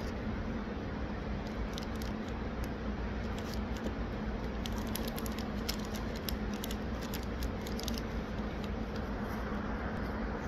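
Steady hum of building ventilation with a constant low drone, and faint small clicks scattered through it.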